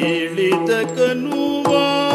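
A Yakshagana bhagavata singing a talamaddale song in long, gliding held notes over a steady drone, with several sharp drum strokes from the maddale.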